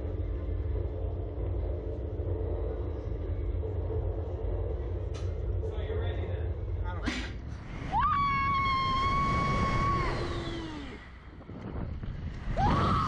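Steady low rumble of the ride's machinery, then a sudden burst about seven seconds in as the SlingShot releases, followed by a long high scream from a rider that rises, holds and falls away during the launch.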